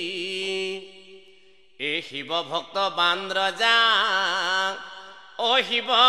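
A male voice singing an Assamese Nagara Naam devotional chant without accompaniment. A held note ends about a second in, then come ornamented, wavering phrases broken by two short pauses.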